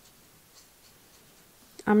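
Faint scratching of a small watercolour brush working metallic paint over a partly dried swatch on paper.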